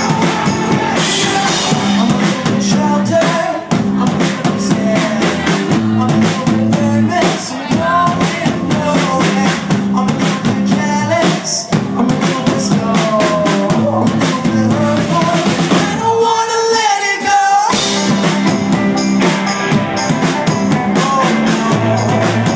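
Rock band playing live, lead vocals over a drum kit, bass and electric guitars. About sixteen seconds in the drums and bass drop out for a second and a half under one held, wavering note, then the full band comes back in.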